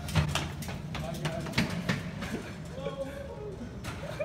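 Wheeled laundry cart rolling fast over a hard hallway floor, a steady low rumble with rattling clicks and knocks, together with running footsteps; the rumble fades in the second half as the cart rolls away.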